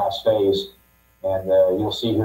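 A man's voice speaking English over a space radio link, with a steady hum under it. The voice breaks off briefly about a second in.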